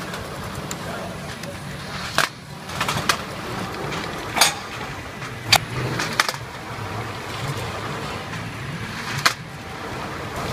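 SP-3503B powder tray filling and sealing machine running, with a steady mechanical hum. Sharp clacks come every one to two seconds as the machine cycles and sealed trays are pushed onto the out-feed table.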